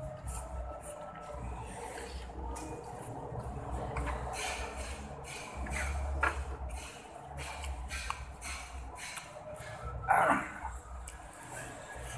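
Close-up chewing and mouth smacking of fried instant noodles: irregular wet clicks and smacks with some low handling bumps, and a louder short sound about ten seconds in.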